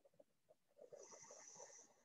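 Near silence: room tone, with one faint breath, a soft hiss lasting about a second in the middle.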